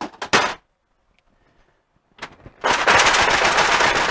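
Metal transmission parts clattering as they fall and tumble while the tail shaft housing is worked off a Saginaw four-speed case. A couple of sharp knocks come right at the start, then quiet, then from a little past halfway a loud, fast rattling clatter of metal on metal.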